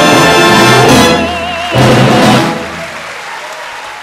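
An operatic tenor with a full symphony orchestra finishing an aria on a long held high note with vibrato, followed by a loud closing orchestral chord. The music then gives way to applause from the audience.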